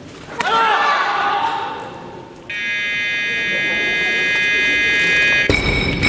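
A short shout about half a second in. From about two and a half seconds a steady electronic buzzer sounds for about three seconds: the referees' down signal for a good lift. Near the end the loaded barbell is dropped onto the platform with a loud thud and metallic clank.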